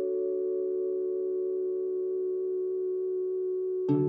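Background music: a chord of several steady tones held without change, then plucked notes start a new passage near the end.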